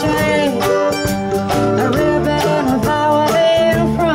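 Live acoustic indie-folk band playing: strummed acoustic guitar, mandolin, bass and drums keeping a steady beat, with a sung vocal line.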